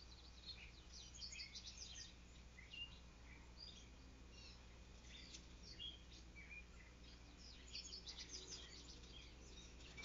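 Faint songbirds chirping and calling, many short high notes in scattered bunches, over a low steady hum.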